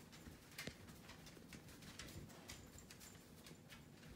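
Near silence: room tone with faint, irregular clicks.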